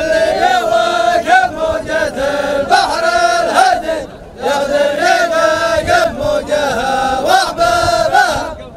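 A group of men chanting a Dhofari habbout verse together in unison, with a short break about four seconds in before the chant picks up again.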